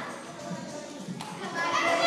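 A group of children chattering in a large hall, with a louder chorus of young voices starting up near the end.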